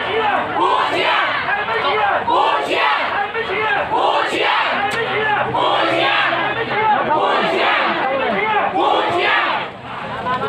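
Crowd of football supporters in the stand, many voices shouting together.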